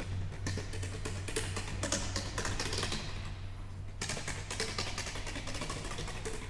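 Contemporary chamber-ensemble music: a dense patter of soft clicks and taps over a steady low drone, thinning out briefly about halfway through before starting again.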